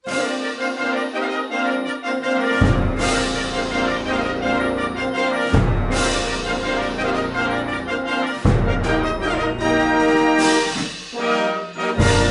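A military concert band playing a full piece: sustained brass chords, with deep strokes entering about every three seconds.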